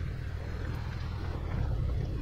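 Motorcycle riding down a gravel road: a steady low rumble of engine and wind noise.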